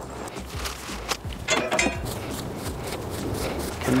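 Footsteps on grass and the rustle and knock of coaxial cables being handled.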